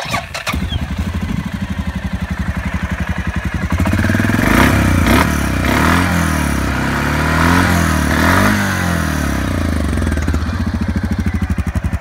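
Suzuki KingQuad 750 AXi's fuel-injected single-cylinder engine started with a short crank and catching at once, then idling. About four seconds in it is revved up and down several times, and it drops back to idle near the end.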